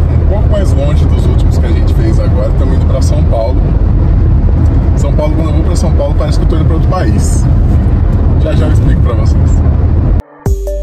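Steady low rumble of a moving car heard from inside the cabin, under people talking.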